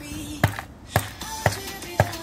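Hammer blows on a gingerbread house, sharp knocks about twice a second, over background music.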